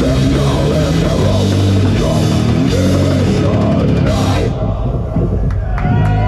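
Live death metal band playing distorted electric guitar, bass and drum kit with crashing cymbals. About four and a half seconds in, the drums and cymbals stop and the guitar and bass chords are left ringing out as the song ends.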